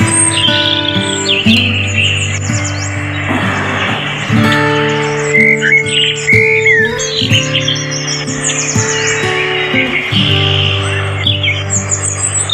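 Calm background music of long held chords, with bird chirps mixed in high above it on and off.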